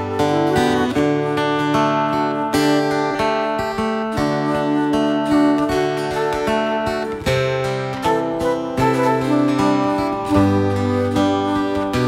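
A rock band playing an instrumental passage with no singing: guitar over a bass line of held low notes that change every second or two.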